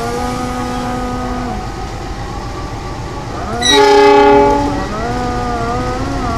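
CC 206 diesel-electric locomotive running as it approaches. About three and a half seconds in it sounds one horn blast, a chord of several notes lasting just over a second, which is the loudest sound.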